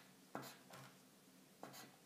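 A pen scratching on a sheet of paper in a few short, faint strokes as lines are struck through printed words.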